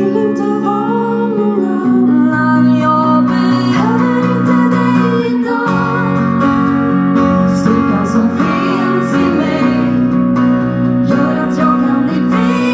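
A live pop song: a woman singing over strummed acoustic and electric guitars with band backing.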